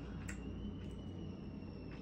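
Faint kitchen room tone: a steady low hum with a thin, high whine, and a soft click about a quarter of a second in.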